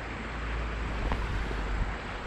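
Shallow creek water sloshing around a hand as a brown trout is released, with a low wind rumble on the microphone.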